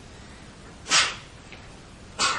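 A single short, sharp breath noise close to the microphone, like a quick sniff, about a second in, over a steady low hiss.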